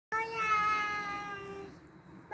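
One long, high-pitched drawn-out cry, held for about a second and a half and sliding slowly down in pitch before fading.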